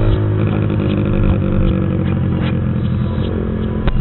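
Single-cylinder-class sport motorcycle engine running at a steady low road speed, picked up on the bike itself; its pitch eases slightly at first, then holds steady.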